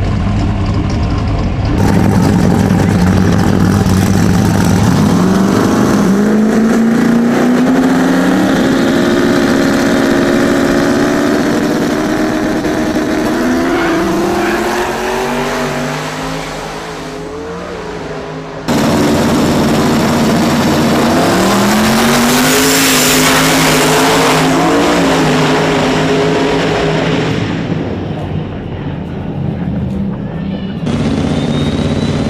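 Street drag cars revving at the line, then launching about two seconds in and accelerating hard at full throttle, the engine pitch climbing and dropping back at each gear shift. After a sudden cut about two-thirds of the way through, the same kind of hard acceleration through the gears is heard again, fading as the cars pull away.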